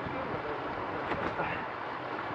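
Steady rushing of flowing water close to the microphone.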